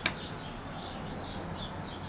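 Small birds chirping repeatedly in the background, short high calls every fraction of a second, after a single sharp click at the very start.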